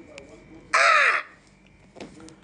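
A man's short, loud, raspy shout, about half a second long, starting about three quarters of a second in, its pitch rising and then falling.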